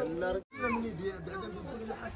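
Voices of people talking, children among them, broken about half a second in by a sudden brief dropout to silence before the voices resume.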